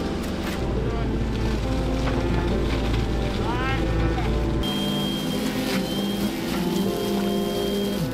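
Background music, with a low engine drone from the construction machinery beneath it during the first half that drops away at a cut.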